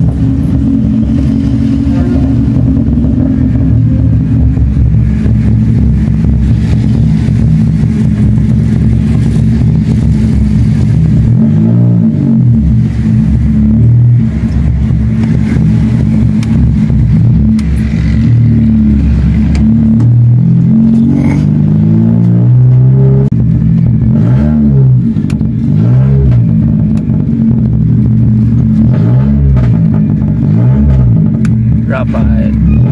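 A car's engine heard from inside the cabin while driving. It runs steadily at first, then rises and falls in pitch several times in the second half as the car speeds up and slows.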